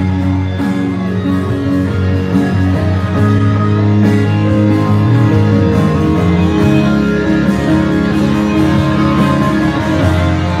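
Instrumental intro of a song played through a PA: an amplified acoustic guitar strummed over long, held bass notes.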